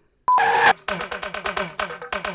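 Electronic music with a fast beat begins about a third of a second in, after a moment of silence. It opens with a short beep.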